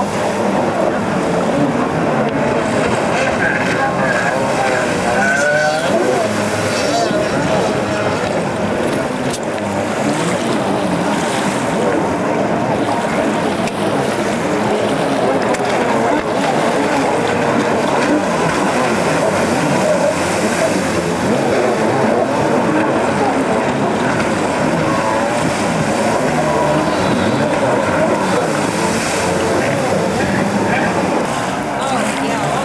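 Jet ski engines running at speed on the water, their pitch rising and falling as the machines race and turn, with indistinct voices mixed in.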